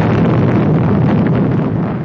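Saturn V rocket engines at liftoff: a loud, continuous rumble of exhaust noise that eases slightly near the end.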